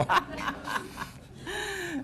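Amused laughter: a brief chuckle at the start, then a drawn-out, gasping laugh about a second and a half in.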